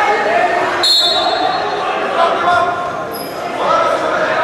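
Shouting voices of coaches and spectators echoing in a large sports hall, with one short referee's whistle blast about a second in that restarts the wrestling bout.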